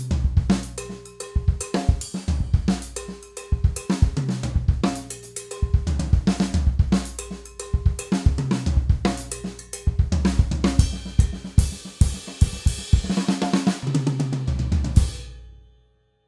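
Acoustic drum kit played solo: a steady groove of kick, snare and cymbals, with a denser wash of cymbals over the last few seconds before the sound fades out near the end.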